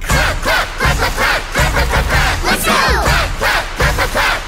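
A crowd of voices cheering and shouting over a children's song with a steady beat.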